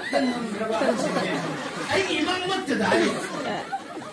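Speech: a man talking into a microphone, with chatter from other voices.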